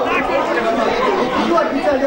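Several people talking at once, overlapping chatter close to the microphone.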